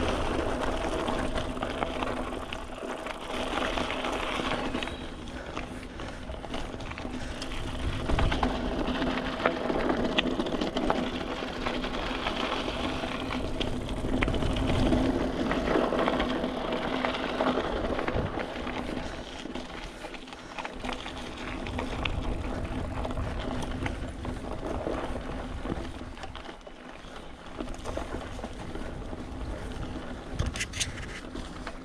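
Mountain bike rolling along a dirt singletrack trail: tyres on packed dirt and the bike rattling and clicking over bumps, rising and falling with speed.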